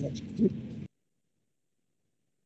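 A person's brief two-part vocal sound, like a murmured 'mm-hm', over a video-call line, cutting off suddenly about halfway through.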